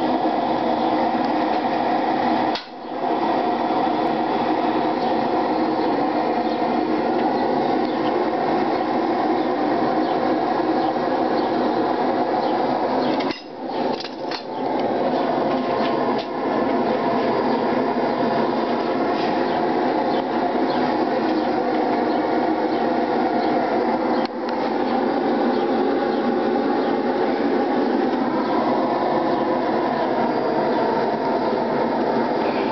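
Gas forge burner running with a steady rushing noise, broken by a few brief dips.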